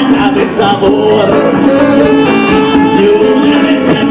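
A live band playing: electric guitars, bass, keyboard and drums, loud and steady throughout.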